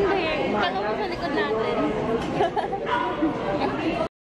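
Several people talking over one another in indistinct conversation at a dinner table, in a large, reverberant room. The sound cuts off suddenly at the very end.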